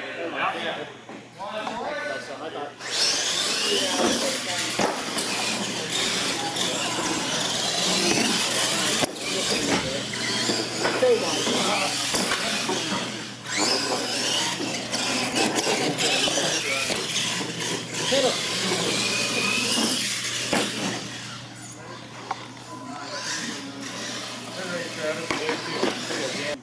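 Radio-controlled monster trucks racing on a concrete floor, their motors whining up and down with the throttle over the noise of tyres and drivetrains, starting about three seconds in.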